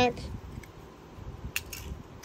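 A small die-cast toy car set down on asphalt: one sharp click about one and a half seconds in, with a few fainter ticks around it.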